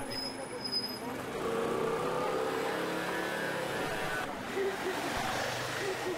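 A motor vehicle going by on the street, its engine loudest from about one to four seconds in and then fading, with nearby voices.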